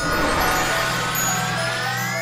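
Cartoon magic-spell sound effect: a sudden rushing whoosh, with a shimmering tone that sweeps upward in pitch from about a second in, over music and a low drone.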